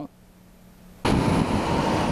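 A quiet second with a faint hum, then a steady rushing of outdoor traffic-like noise that starts abruptly about a second in, the location sound of street footage.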